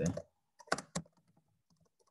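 Computer keyboard typing: a few separate keystroke clicks in the first second, then fainter ticks.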